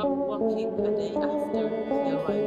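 Background music: a slow melody of held notes that change about every half second.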